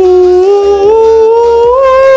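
A man's voice holding one long sung note as a vowel-singing exercise, stepping up in pitch a few times toward the end.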